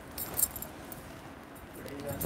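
Sari fabric rustling as it is unfolded and held up by hand, with a brief light jingle of glass bangles about half a second in.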